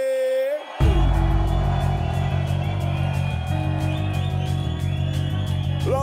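A long held shout cuts off. Just under a second in, a drum and bass track drops with heavy sub-bass and fast, steady drums.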